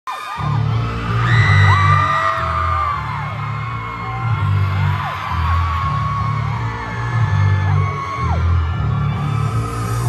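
K-pop dance track played loudly over a concert hall's sound system, with a heavy bass beat, and fans screaming and cheering over it.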